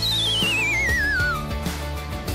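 A wavering, whistle-like comic sound effect that slides down in pitch for about a second and a half, then stops. It plays over background music with a steady beat.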